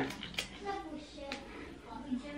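A few quick spritzes from a gold perfume spray bottle's atomiser near the start, with another short sharp sound a little later.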